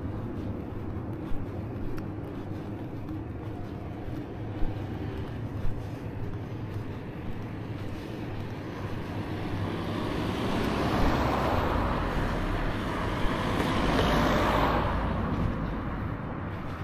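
A car passes on the road, its tyre and engine noise building from about halfway through, loudest near the end and then fading, over a steady low traffic rumble.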